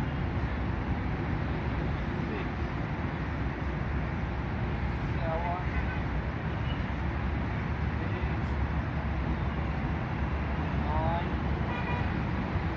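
Steady outdoor road-traffic rumble, with a brief pitched sound twice, about five seconds in and again near the end.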